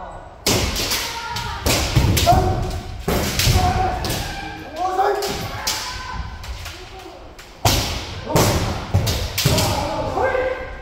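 Kendo sparring: repeated sharp cracks of bamboo shinai striking armour and the thuds of stamping feet on a wooden dojo floor, coming at irregular intervals about a dozen times, mixed with short shouted kiai.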